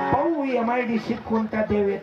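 Speech only: a man talking in a lively, preaching voice.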